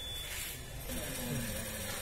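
A steady high-pitched electronic buzzer tone from the tyre-inflation system's puncture alarm, cutting off about a quarter of a second in, over a low steady background hum.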